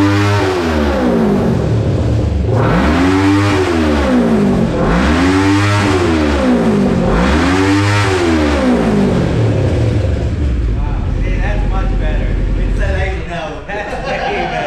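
Kawasaki Ninja 650's parallel-twin engine revved repeatedly while the bike stands still, through its aftermarket Two Brothers exhaust, just after a Woolich flash tune. The revs rise and fall about four times, roughly two seconds each, then settle to idle about ten seconds in, with men's voices over the idle near the end.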